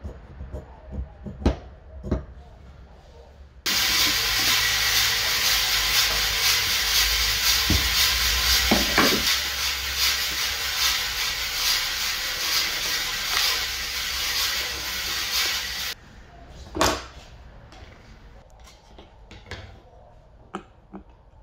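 A hand bench brush sweeping shavings across a work mat: a loud, steady, scratchy hiss of bristles that starts suddenly about four seconds in and stops abruptly after about twelve seconds. A few sharp clicks and knocks come before and after it.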